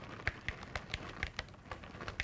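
Light, uneven clicks and taps from utensils and ingredients at mixing bowls, about three a second.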